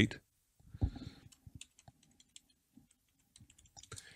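Faint, scattered clicking of a computer mouse, a little louder about a second in.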